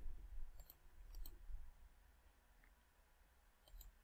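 Faint computer mouse clicks, a few scattered ticks with a pair in the first second and a couple more near the end, over a soft low rumble.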